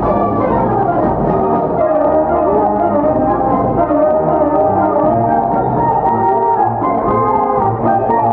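Brass band playing a melody with held notes.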